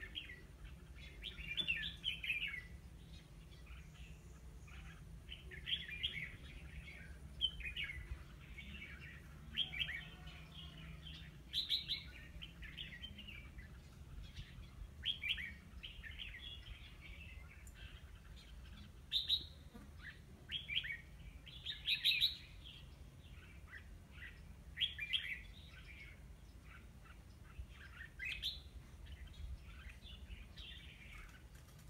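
Red-whiskered bulbul singing short, chirpy phrases every second or two, with a few louder bursts past the middle.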